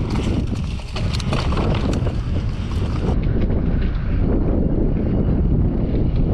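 Wind buffeting the microphone of a camera riding along on a mountain bike, a loud steady rumble with scattered clicks and knocks from the bike. About three seconds in the rumble goes on but sounds duller.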